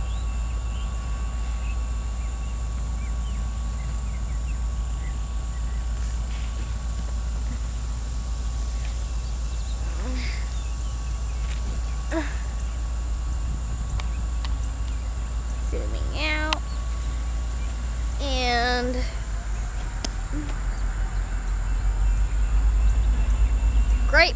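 Diesel locomotive idling at a standstill, a steady low rumble that grows louder near the end.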